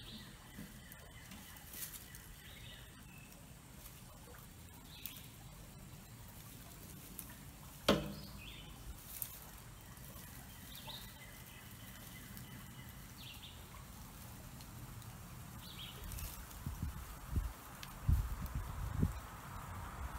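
Quiet outdoor ambience with scattered short bird calls, one sharp knock about eight seconds in, and low thumps and rumbles near the end.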